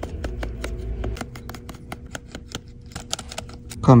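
Irregular small clicks and taps, several a second, of a precision screwdriver and tweezers working the screws and brackets on an iPhone's metal logic-board shield plates.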